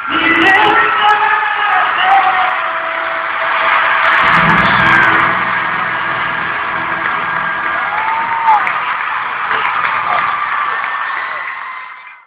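Large arena crowd cheering and screaming, with whoops, over the last held notes of a pop ballad played live. The sound cuts off sharply at the end.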